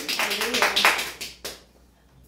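Scattered hand claps from a small group, an irregular patter that dies away about a second and a half in, leaving near silence.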